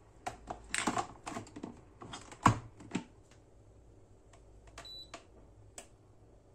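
Plastic clicks and knocks from the capsule adapter of a HiBREW capsule coffee machine being handled: a rapid cluster in the first three seconds with the loudest knock about two and a half seconds in, then a few sparser clicks.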